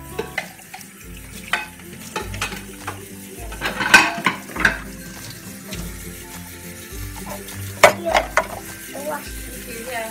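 Tap water running into a stainless-steel sink as dishes and plastic baby bottles are washed, with several sharp clinks and clatters of crockery being handled.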